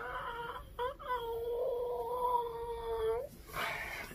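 A man whimpering in pain from a knock to his knee: a long, high whine held at a steady pitch, broken briefly about a second in, then held again until near the end, where it gives way to a short breathy exhale.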